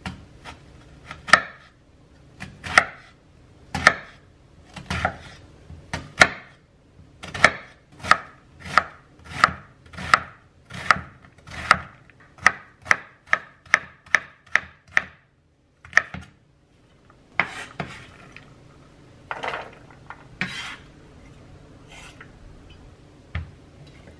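Chef's knife chopping an onion on a wooden cutting board: slow, spaced cuts at first, then a quicker steady run of about two cuts a second. After a short pause, a few longer scraping sounds near the end as the diced onion is swept off the board.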